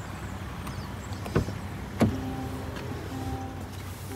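Land Rover Defender driver's door being opened: a sharp click about a second and a half in, then a louder knock about two seconds in. The knock is followed by a chime tone that sounds in pulses about once a second, the vehicle's in-cabin warning chime.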